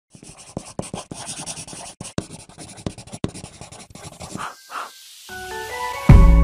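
Crackling, scratching paper sound with many sharp clicks, then two short swishes and a rising swell with a few held notes in the last second, building into music.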